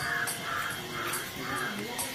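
A bird calling four times in a row, about two calls a second, over a low murmur of voices.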